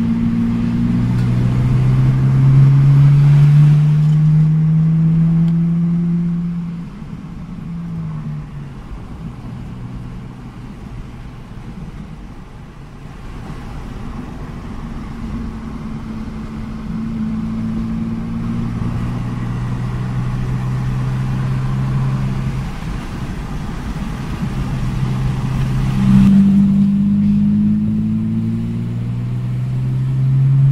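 Lexus IS200's 1G-FE straight-six pulling the car on the road, heard from inside the cabin, running on a freshly fitted Speeduino standalone ECU during initial street tuning. The engine note rises under acceleration for the first few seconds and drops off about seven seconds in. It then holds steadier before climbing again near the end.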